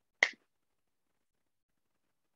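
A single short, sharp click a quarter of a second in, then silence.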